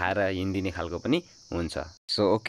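Speech only: a voice talking, with a short pause about two-thirds of the way in and a steady high hiss behind it.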